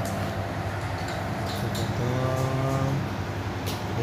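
A few light clicks of plastic-sheathed electrical cables being handled and pushed through a PVC conduit junction box, over a steady low hum. About halfway through, a motor's pitched drone sounds for about a second and falls slightly.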